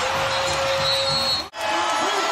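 Basketball arena crowd noise, a steady murmur of the spectators. It cuts out abruptly about a second and a half in, then resumes.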